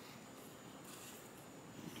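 Near-silent room tone with a faint rustle of cut paper being handled, a little brighter about a second in.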